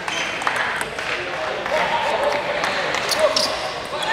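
Table tennis ball in play: a run of sharp, irregular clicks of the ball striking the bats and the table, with voices in the hall.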